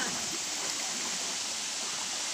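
Steady rushing of a small waterfall pouring into a pool: an even, unbroken noise of falling water.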